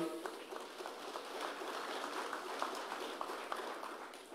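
Audience applauding, a dense patter of many hands clapping that fades away near the end.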